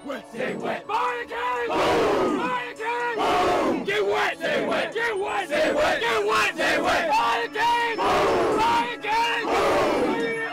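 A team of men in a huddle circle shouting a cheer together, in loud rhythmic yells about two a second that build up about a second in.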